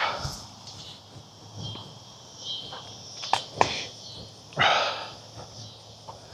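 Evening outdoor ambience with insects chirping faintly. Two sharp clicks come about three and a half seconds in, and a short rush of noise follows near five seconds.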